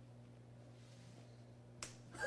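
Near silence: a low steady hum, with one short sharp click near the end.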